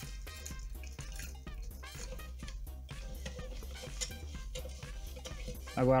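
Background music with a steady low beat, over faint small clicks and splashing as caustic soda flakes are poured into a glass jar of water and stirred with a metal spoon.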